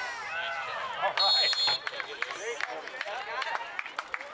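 Referee's whistle, one short shrill blast about a second in, over spectators' voices chattering and calling out.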